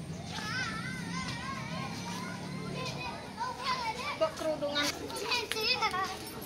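A toddler vocalizing in a high, wavering voice without clear words, louder and more varied in the second half.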